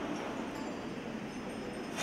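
Small hand altar bells ringing faintly and continuously, with a steady background murmur of an outdoor crowd.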